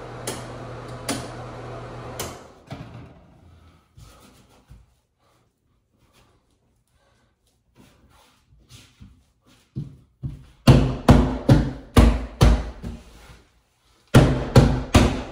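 Hands rubbing and pressing a dampened wool wallcovering flat against a wall. A steady rubbing hiss comes at first, then it goes almost quiet, and near the end there is a quick run of about eight firm hand strokes on the sheet.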